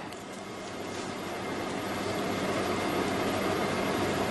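A steady rushing noise that slowly grows louder.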